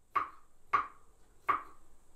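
Knife chopping carrots on a cutting board: three sharp chops, a little under a second apart, each dying away quickly.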